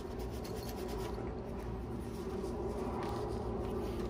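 Cloth rag rubbing and wiping degreaser off the body of a cordless ratchet in repeated irregular strokes, over a steady low background hum.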